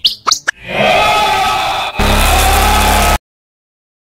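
A few quick rising squeaky chirps, then a dense electronic synthesizer sound swelling in. About two seconds in a heavy bass joins, and everything cuts off abruptly a little past three seconds.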